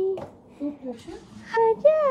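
A voice singing in a sing-song chant: a held note ends right at the start, a short lull with a few soft vocal sounds follows, and a new sliding sung phrase begins about one and a half seconds in.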